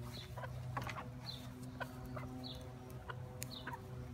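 Backyard hens clucking as they spill out of the coop, with a short high note recurring about once a second, over a steady low hum.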